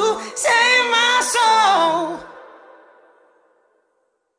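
A woman singing the closing phrase of a pop song, with little backing. The voice stops about two seconds in, and its echo fades away to silence near the end.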